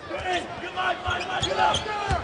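Basketball being dribbled on a hardwood arena court, a series of low bounces, with arena crowd voices behind.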